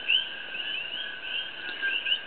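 Continuous high-pitched animal chirping, a few short chirps a second, over a steady high tone.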